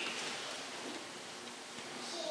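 A pause in the speech: a steady, faint hiss of room tone and microphone noise.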